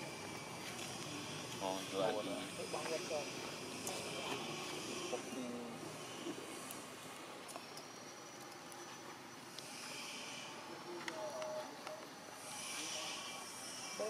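Faint, intermittent human voices over a steady outdoor background hiss, with a high-pitched sound coming and going about ten and thirteen seconds in.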